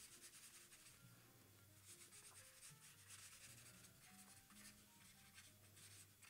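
Very faint, repeated swishing of a paintbrush's bristles scrubbed back and forth across paper, laying down wet purple paint.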